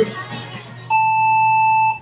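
Background music fading out, then a single electronic timer beep: one steady tone held for about a second, marking the end of an exercise interval.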